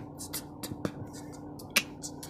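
Footsteps crunching on a gravel path, sharp crackles with a louder crunch about every second and smaller clicks between, over a faint steady hum.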